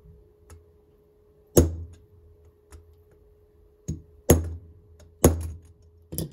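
Pliers knocking on a tool held against a dirt-bike carburetor to tap out a stuck float pin: four sharp metal knocks, one about a second and a half in and three close together near the end.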